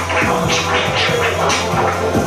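Hip-hop beat with turntable scratching over it: short scratch strokes sweeping up and down in pitch, several a second, over a steady bass line.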